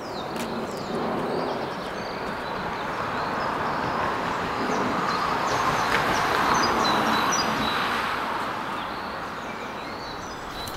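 A road vehicle passing, its tyre and engine noise swelling slowly to a peak about six to seven seconds in and then fading away, with birds chirping faintly.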